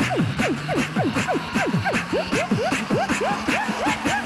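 Group vocal beatboxing: rapid falling vocal sweeps, about four a second, over a held bass tone, with steady mouth-percussion clicks.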